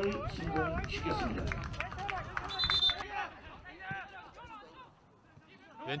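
Footballers' voices shouting and calling to each other on the pitch right after a goal, with a short high whistle blast a little over two seconds in. The voices die away in the last couple of seconds.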